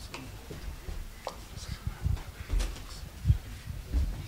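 Irregular soft thumps and light clicks of handling and movement noise as small gift boxes are handled and people shift about near a stage microphone. The loudest thump comes a little past three seconds in.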